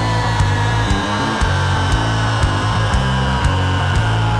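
Heavy rock music: a band with heavy bass and drum hits, and a high held note sliding slowly downward over it.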